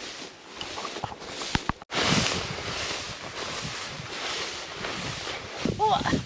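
Steady swishing rustle of tall dry grass as someone walks through it, with a few light ticks in the first two seconds and a sudden brief cut-out just before the two-second mark.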